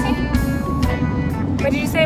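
Steady low road and engine noise inside the cabin of a moving car, with short snatches of voices over it.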